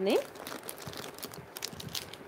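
Clear plastic jewellery packet crinkling as it is handled: a run of small, irregular crackles.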